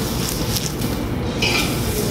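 Butter and oil sizzling in a very hot skillet on a grill: a steady hiss with a low rumble beneath it.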